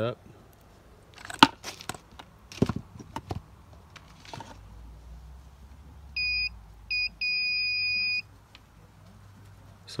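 Clatter and sharp knocks of a clamp meter and its test leads being set down and handled on a bench, then the meter's continuity beeper: two short beeps and one beep lasting about a second, sounding as the test probes make contact.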